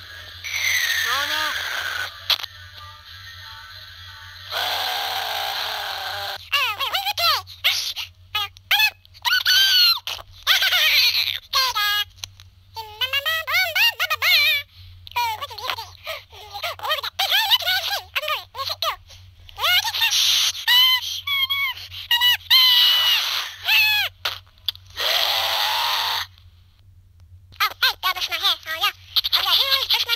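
High-pitched, voice-like sounds in short, chopped bursts with gliding pitch, played through a Nintendo DSi's small speaker as a Flipnote animation's soundtrack, over a steady low hum. A brief pause comes a few seconds before the end.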